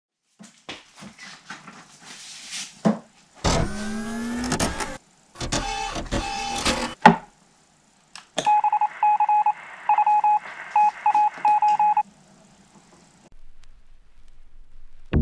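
A string of electronic sounds: scattered clicks and two short sweeping bursts, then a pulsing electronic beeping in two tones for about four seconds, cutting off about two seconds before the end.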